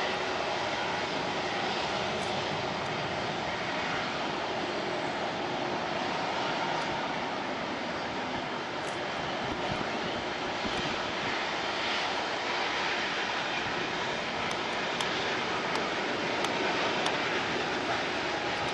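Twin CFM56-3 turbofan jet engines of a Boeing 737-300 at climb-out thrust just after takeoff, heard from the ground as a steady, even jet noise that neither rises nor falls.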